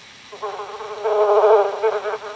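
A bee's buzz sound effect: a steady buzz that starts about half a second in, swells in the middle and fades near the end.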